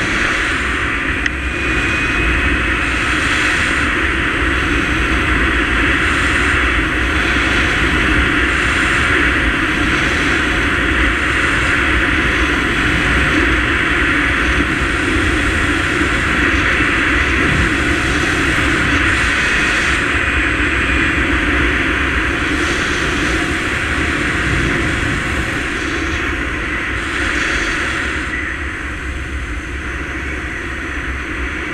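Steady rush of airflow over the helmet camera's microphone during a paraglider flight, loud and unbroken.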